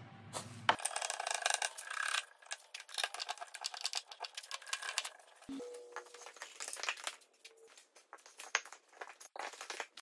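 Scattered light knocks and clicks of wooden pieces being handled and fitted together: a sawn offcut lifted off a post, then a post set into a timber frame. The loudest knock comes just under half a second in.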